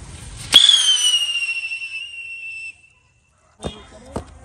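Whistling firework going off from a hand-held bundle. It starts suddenly with a sharp crack, then gives a loud, high whistle that falls slightly in pitch and fades over about two seconds. A couple of short clicks come near the end.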